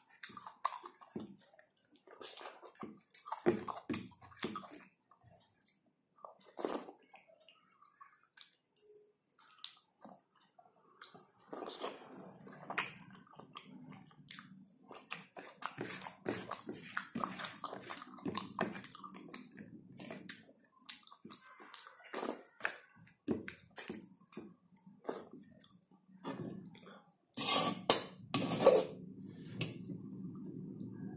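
Close-up eating sounds: chewing and lip-smacking of a mouthful of rice eaten by hand, heard as a string of short wet clicks. A low steady hum comes in about twelve seconds in, and a few louder clicks come near the end.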